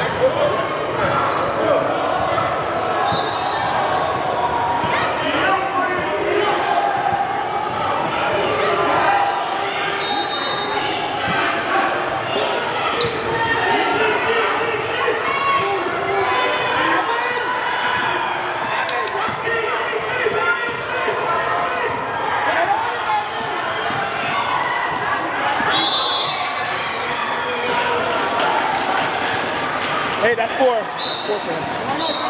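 A basketball bouncing on a hardwood gym floor during play. The chatter of spectators and players echoes steadily through a large gym hall.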